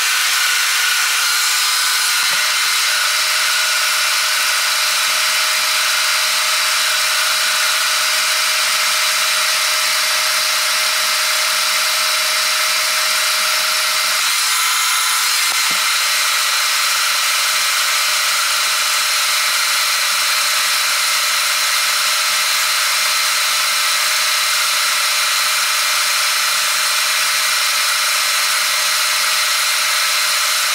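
Metal lathe driving a long boring bar through a pivot bore in an old excavator arm, boring out the bore with coolant running: a steady machining sound with a few held whining tones.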